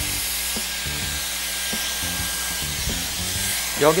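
Dyson Airwrap hair styler running with its round brush attachment: a steady whoosh of blown air from its motor, even in level throughout.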